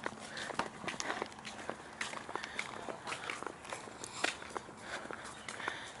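Footsteps on a paved path, a quick, uneven run of light scuffs and taps as people walk.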